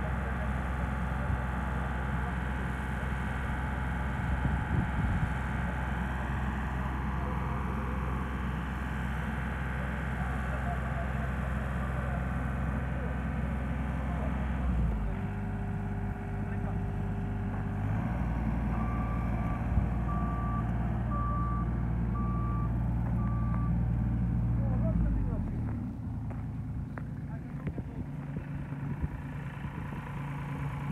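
Skid-steer loader's engine running steadily, its note changing about halfway, with a reversing alarm beeping about five times a little past the middle. The engine sound drops away a few seconds before the end.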